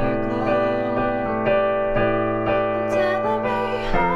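Piano playing the song's chorus as sustained chords, with the bass note changing about every two seconds. A singing voice joins in with gliding notes near the end.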